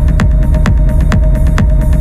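Techno music: a steady four-on-the-floor kick drum about twice a second over a heavy bass line and a sustained held tone.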